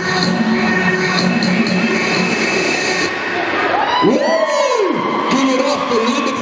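Audience cheering and whooping, with voices swooping up and down in pitch from about four seconds in, as a routine ends.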